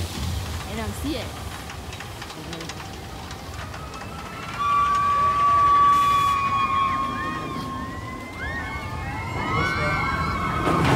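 Big Thunder Mountain Railroad mine-train roller coaster going by: about halfway through, a long steady high-pitched squeal sets in and sags slightly in pitch over a few seconds. Near the end it gives way to many overlapping shrieks that rise and fall, from the riders.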